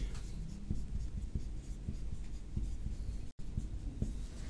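Marker pen writing on a whiteboard: faint, irregular short strokes as characters are written.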